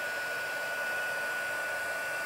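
Embossing heat tool running steadily: an even fan hiss with a steady high whine, blowing hot air onto a card to melt silver embossing powder.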